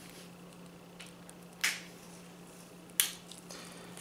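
Two sharp metallic clicks about a second and a half apart as the tips of small snap-ring pliers work at the retention ring of a vintage Craftsman 1/2-inch ratcheting breaker-bar adapter, over a faint steady low hum.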